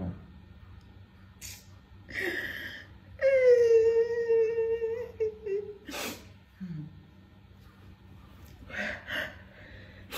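A woman crying: sniffs, then one long cry held on a single, slightly falling pitch for about two seconds, then more sniffs near the end.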